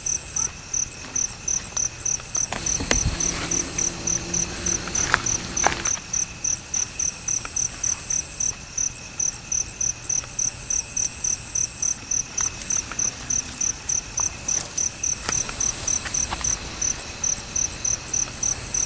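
Night insects calling: a cricket's high-pitched chirp repeating steadily about three times a second, with other insects trilling behind it. A few brief snaps and rustles in the undergrowth come about three seconds in and again around five to six seconds.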